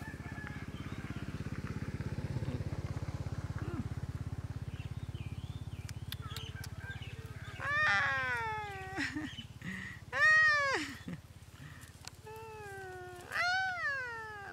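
A baby monkey giving three loud, pitched cries from about halfway through, each under a second long and arching up then down in pitch. A low steady hum runs under the first half.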